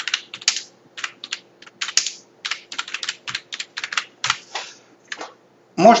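Typing on a computer keyboard: a quick, irregular run of keystrokes that stops about a second before the end.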